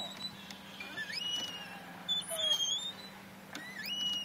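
Playground swing squeaking as it moves: three short, high squeaks, about a second and a half apart.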